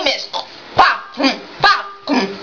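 A few short, bark-like yelps, about two a second, each rising in pitch.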